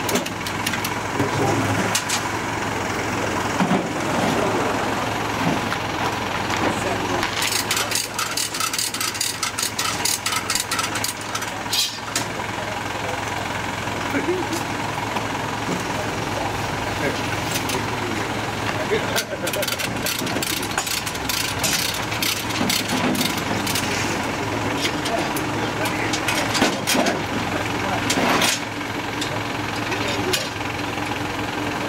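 A truck engine idling steadily, with people talking and several runs of quick, sharp clicking and knocking.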